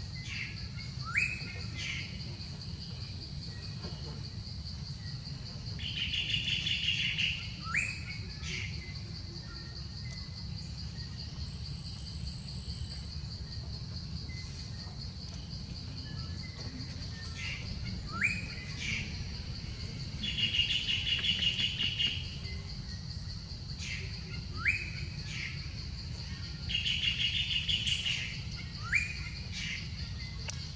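Birds calling: a phrase of sharp rising whistles and a short buzzy trill, repeated several times, over a steady high insect drone and a low rumble.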